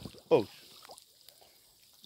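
A man's short startled "oh", then faint water trickling and dripping with a few light clicks as a spearfisher in the river holds onto the side of a wooden canoe.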